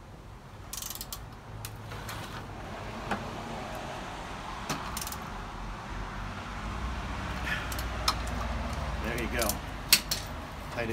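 Socket ratchet clicking in irregular runs while a 5/8-inch long socket tightens the rear axle nut of an electric scooter. Scattered metal clinks of the tools sound with it, and the sharpest click falls at the very end.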